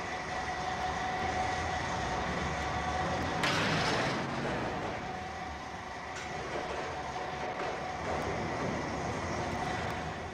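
Tilghman Wheelabrator shot-blasting machine running: a steady mechanical rumble with a held whine, and a loud hiss lasting about half a second about three and a half seconds in.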